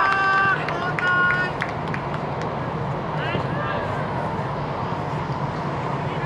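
Players shouting short calls to each other during a futsal game, loudest at the start and again about a second in, over a steady background hum.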